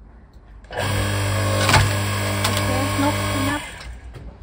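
Electric hydraulic log splitter's motor switching on, running with a steady hum for about three seconds, then stopping. A single sharp crack comes about a second after it starts.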